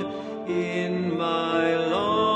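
A slow song with long held sung notes that step from pitch to pitch.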